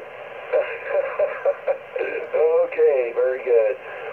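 Single-sideband voice received on an Icom IC-718 HF transceiver and heard through its speaker: a thin, narrow voice with no deep or high tones, talking with short pauses.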